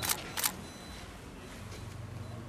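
Two short, sharp clicks about a third of a second apart, then a faint steady background with a low hum.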